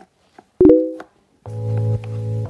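Small plastic clicks of a toy car's dashboard button being pressed, then a short loud electronic tone about half a second in. Keyboard-like music with steady chords and bass starts about a second and a half in.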